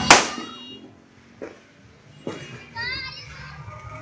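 A single loud, sharp bang just after the start, ringing off briefly. Then a few faint knocks, and about three seconds in a child's short wavering call.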